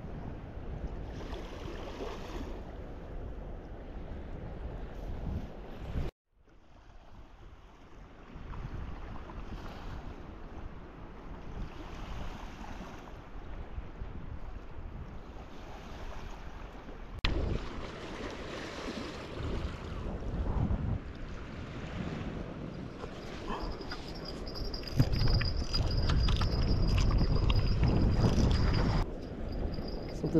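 Wind buffeting the camera microphone over small waves lapping at a sandy shore, the sound cutting out briefly about six seconds in. The gusts grow heavier and deeper for a few seconds near the end.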